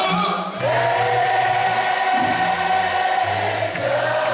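Gospel singing: a man's voice holds one long note over steady lower voices.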